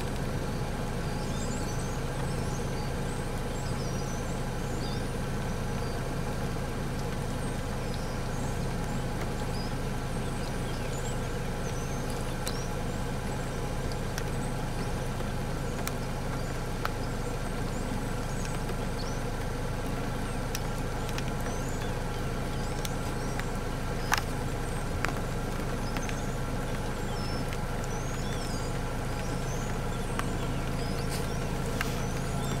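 Vehicle engine idling steadily, with small birds chirping high above it throughout and one sharp click about 24 seconds in.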